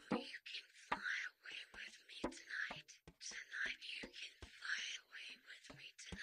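Close-up whispered reading into the microphone, breathy and unpitched, broken into syllables, with frequent sharp mouth clicks and breath pops on the mic.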